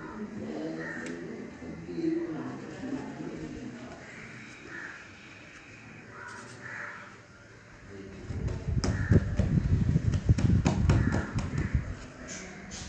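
Dough being pressed and rolled by hand on a wooden table: a run of heavy, muffled thumps and knocks starting about eight and a half seconds in and stopping just before the end. Faint background voices come before it.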